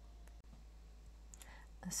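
Faint room tone with a steady low hum between spoken phrases, briefly cutting out about half a second in.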